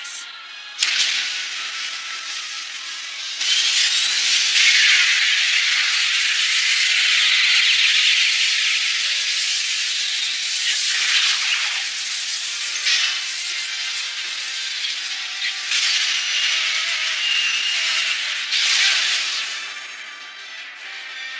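A loud, hissing rush of noise from the anime's sound effects. It swells about three seconds in, holds with a few sharper surges, and dies down at the very end.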